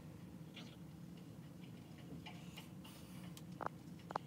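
Quiet room tone with a steady low hum, faint soft dabbing of a makeup sponge on the face, and one sharp tick near the end.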